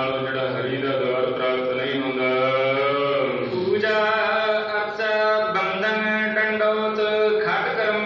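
Sikh devotional chanting (simran) in long held notes; about three and a half seconds in the pitch slides down and a new phrase begins.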